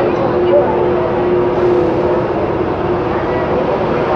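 Steady electrical hum from a Santiago Metro NS-74 train standing at the platform, easing off about halfway through, under the chatter of passengers crowding the platform.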